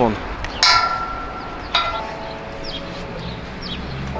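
Two metallic clangs about a second apart, each ringing on and dying away, as the straps and buckles of gymnastic rings strike a metal post while the rings are hung.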